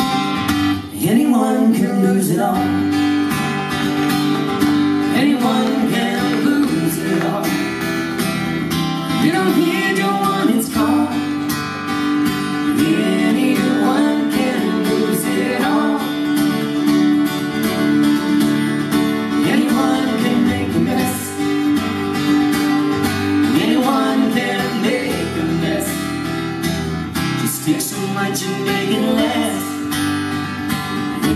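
Live acoustic band playing an instrumental intro: two strummed acoustic guitars, a violin melody that slides and wavers, and keyboard notes held steady underneath.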